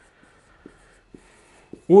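Dry-erase marker writing on a whiteboard: a faint rubbing squeak for about a second and a half, with a few light taps of the tip against the board.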